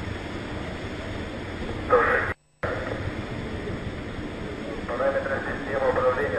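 Brief, indistinct snatches of a launch-control announcer's voice over a radio or loudspeaker link, heard over a steady rushing background noise. The sound drops out completely for a moment about two and a half seconds in.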